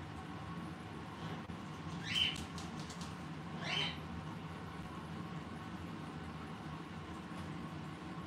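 Parrot making two short calls that slide upward in pitch, about two and four seconds in, over a steady low room hum.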